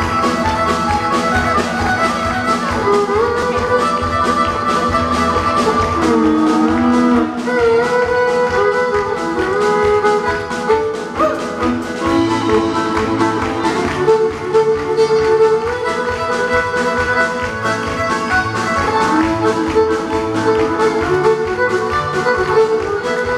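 Live band playing an instrumental passage, a fiddle bowing the melody over guitar, keyboard and drum backing.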